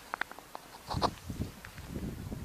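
A few quick light clicks, then a short, rough throat-clearing noise from a man about a second in.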